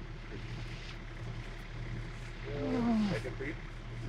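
A man groans in pain from a broken leg: one falling moan about two and a half seconds in, trailing into a few short breaths of voice, over a steady low hum.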